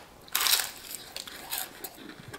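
A crunchy bite into the crisp, egg-battered crust of a piece of fried chicken, loudest about a third of a second in, followed by a few smaller crunches of chewing.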